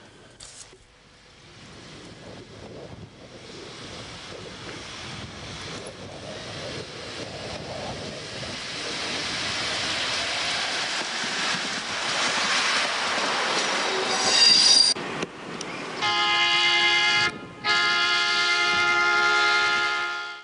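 Berlin S-Bahn class 480 electric train running past, its rolling noise building from faint to loud over about ten seconds, with a brief high wheel squeal about fourteen seconds in. Near the end, two long steady horn tones, split by a short break.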